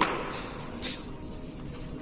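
Tiling hand tools being handled and put away: a sharp knock right at the start, then a short, high scrape about a second in.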